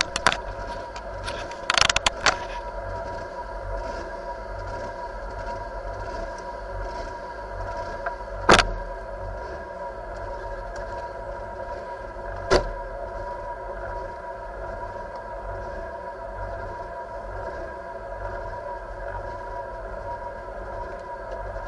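Turbocharged four-cylinder engine of a Mitsubishi Lancer Evo VII Group A rally car idling steadily while the car stands at the stage start. A few sharp clicks come about two seconds in, and two louder single knocks come about eight and twelve seconds in.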